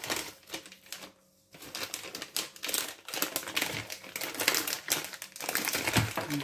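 Thin plastic bag crinkling and rustling in irregular bursts as a hand rummages in it to take out a chorizo sausage, with a brief lull about a second in.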